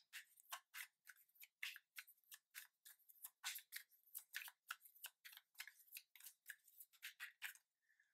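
Faint, quick clicks of a tarot deck being shuffled in the hands, about four or five a second and irregular, stopping shortly before the end.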